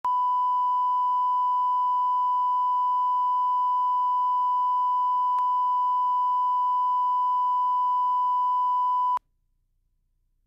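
Broadcast line-up reference tone: one steady, unwavering test tone played with colour bars, which sets the reference audio level on the tape. There is a faint click about halfway through, and the tone cuts off abruptly about nine seconds in.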